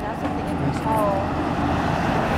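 Pickup truck towing a travel trailer driving up and past close by, its engine and tyre noise growing louder over the two seconds.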